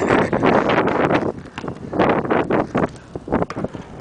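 Wind buffeting the microphone in loud, uneven gusts that ease off in the last second or so.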